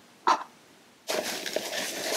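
Packing tape on a cardboard shipping box being cut open with scissors: a brief short sound near the start, then about a second in a scratchy rasp that lasts about a second.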